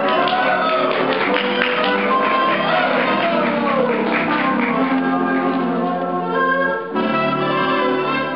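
Music accompanying the act, many instruments layered with gliding melodic lines; about seven seconds in it shifts abruptly into a new section.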